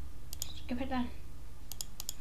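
Computer mouse clicks, a quick pair about a third of a second in and another pair near the end, with a short vocal sound from a boy in between.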